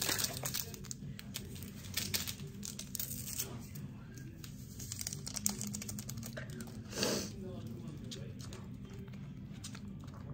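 Paper wrapper or packet being torn open and crumpled by hand, a run of small crackles and ticks, with light clicks of a spoon in a cup near the end.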